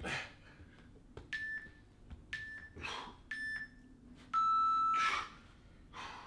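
Interval timer beeping: three short beeps about a second apart, then one longer, lower, louder beep, the usual signal that a work interval has ended. Short, hard breaths come between the beeps.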